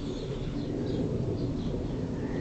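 Faint bird calls over a low, steady background rumble.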